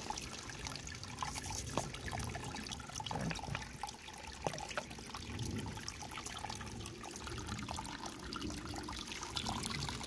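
Shallow creek water trickling over rocks, with a toothbrush scrubbing a quartz crystal in the water and light scratching ticks throughout.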